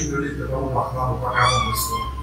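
A high-pitched drawn-out squeal or call that glides steadily down in pitch, starting past the middle, over faint voices.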